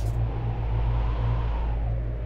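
A low, steady rumbling drone from the serial's dramatic background score.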